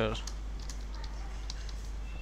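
Typing on a computer keyboard: scattered light key clicks, over a steady low hum.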